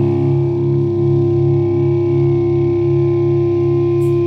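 Instrumental rock music led by distorted electric guitar: a held, sustained chord over a low part pulsing at a steady rhythm.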